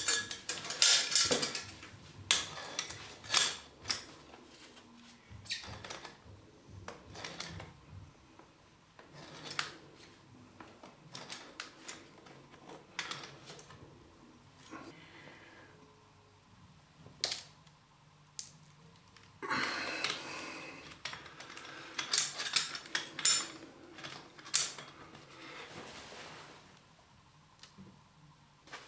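Slip-joint pliers tightening a brass compression nut on a lead pipe fitting while a second pair holds the fitting body: scattered metallic clicks and clinks as the jaws bite and are reset on the brass, with a short rasping stretch about twenty seconds in.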